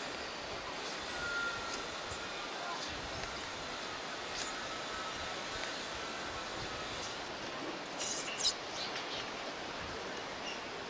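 Wheelchair rolling over the metal slat deck of a suspension bridge: a steady rolling noise, with a few sharp metallic clicks about eight seconds in.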